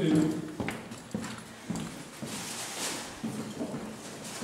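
Footsteps of a man walking along a hallway floor while carrying film reels, about two steps a second.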